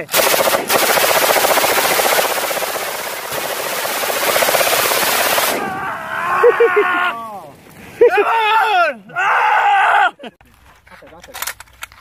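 Belt-fed machine gun firing one long continuous burst of about five and a half seconds. A man then whoops and yells for several seconds.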